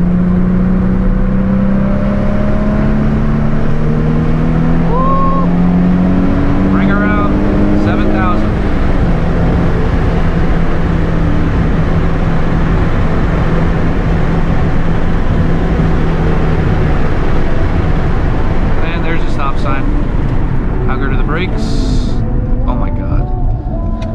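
Nissan 350Z's 3.5-litre V6 heard from inside the cabin, pulling in gear with its pitch climbing steadily for about eight seconds. It then drops to a steady drone that fades into road and tyre noise about two-thirds of the way through.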